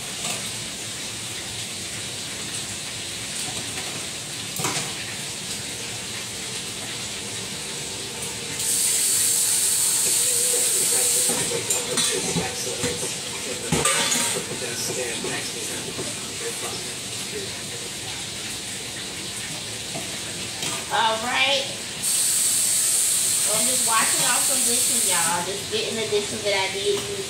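Food frying in a pan on an electric coil burner, with a steady sizzle. Twice it swells into a louder, sharper hiss lasting about three seconds, about nine seconds in and again near the end.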